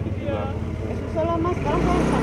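Indistinct background voices over a steady low engine rumble, which grows louder near the end.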